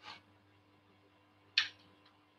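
Quiet room with a faint steady low hum. A faint brief scrape at the start, then about a second and a half in a short sharp clink as a metal spoon dips into a ceramic bowl of oil, chilli and garlic.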